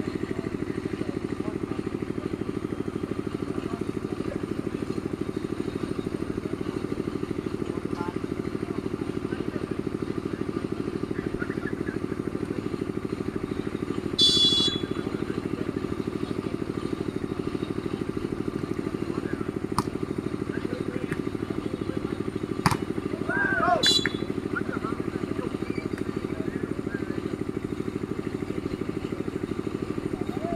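A volleyball referee's whistle blows sharply about halfway through and again near the end of a rally, over a steady low engine-like drone. In between come a couple of sharp smacks of the volleyball being struck.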